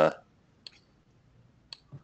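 Computer mouse clicking a few times, single clicks about a second apart, as numbers are entered on an on-screen calculator.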